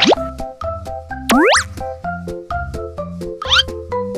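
Bouncy children's background music with short plucked notes over a steady low beat, broken by three quick rising whistle-like cartoon sound effects: one at the start, a louder one about a second and a half in, and a fainter one near the end.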